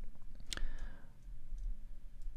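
A single sharp click at the computer, about half a second in, over a faint low hum.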